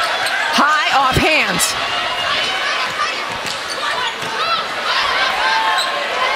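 Volleyball rally on a hardwood court: sneakers squeaking in short chirps, a sharp hit of the ball about a second and a half in, over a steady arena crowd.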